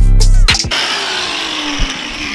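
Background music with a beat cuts off about half a second in, giving way to a handheld angle grinder winding down, its pitch falling steadily.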